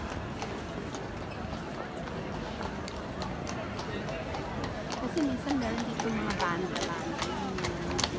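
Crowd of people talking, with the hooves of a carriage horse clip-clopping on cobblestones, the clops getting more frequent and louder near the end.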